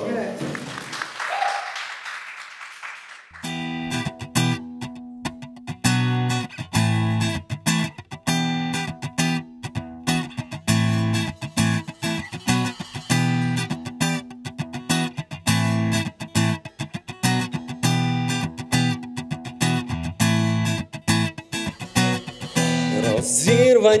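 Live band playing an instrumental intro: acoustic guitar strummed in a steady rhythm with electric bass and drum kit. The music starts about three seconds in, after a brief rush of noise.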